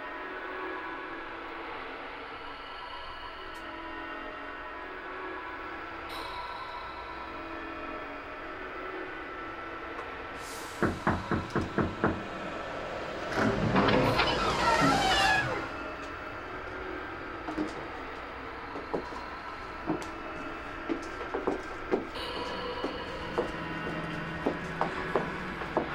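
Six quick knocks on a door over eerie background music, then a louder two-second noisy sweep as the door swings open by itself, followed by light footsteps.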